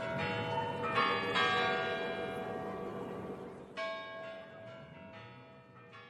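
Church bells struck several times, each strike ringing on and slowly fading; a fresh peal comes in about four seconds in, and the ringing dies away toward the end.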